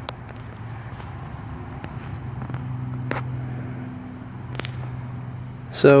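A steady low mechanical hum, a little louder in the middle, with a few faint clicks.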